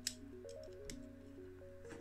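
Quiet background music: a simple melody of soft held notes stepping up and down. Three brief, light clicks, the sharpest at the very start, come from the small die-cast metal base being handled.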